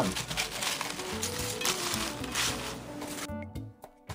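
Hands tossing baby spinach leaves in a metal colander, a leafy rustling that stops suddenly about three seconds in, over background acoustic guitar music.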